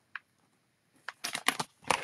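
A short pause, then a quick run of small clicks and light knocks from a plastic-cased stamp set being handled and marked on a desk, starting about halfway through.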